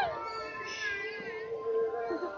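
A sheep bleating: one drawn-out high call that falls in pitch, over a steady held tone.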